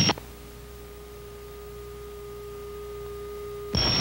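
A steady electrical hum on the crew intercom line: one unchanging note with a faint higher overtone, cut off suddenly when the voice returns near the end.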